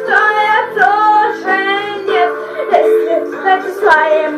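A pop song playing, a child's voice singing the melody over steady backing accompaniment.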